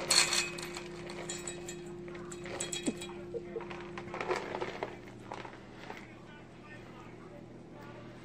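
Clinks and taps from pets feeding at food bowls on a tiled floor, the sharpest just after the start, over a steady hum that fades about halfway through. A faint voice is in the background.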